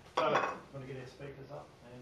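A brief clatter of something hard being handled about a quarter second in, then indistinct low talk.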